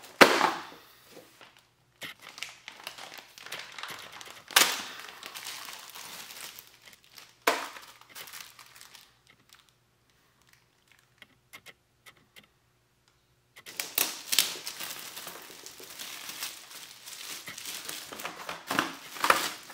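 Plastic packaging crinkling and rustling as hands unwrap and handle bagged, shrink-wrapped handguard parts, with a few sharp plastic clacks, the first right at the start and others about 4.5 and 7.5 seconds in. It goes nearly silent for a few seconds in the middle, then a dense stretch of crinkling follows.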